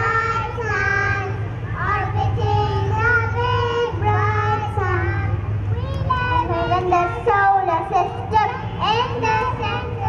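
A young child singing into a stage microphone through a PA system: held and gliding notes of a children's song, over a steady low hum.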